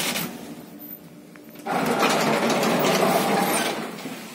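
Automatic sliding doors of a 1978 SamLZ passenger elevator opening: after a short clatter at the start, the door drive starts about a second and a half in and runs noisily for about two seconds, then fades.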